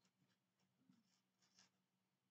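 Near silence: a few faint, brief scratches and rustles of a crochet hook working yarn, over a faint low steady hum.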